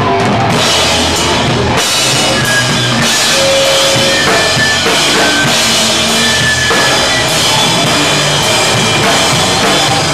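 Live powerviolence band playing loud and fast, the drum kit and its cymbals loudest and close to the microphone, with guitar and bass underneath.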